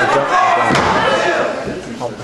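Voices speaking over one another, with a single thump about three quarters of a second in.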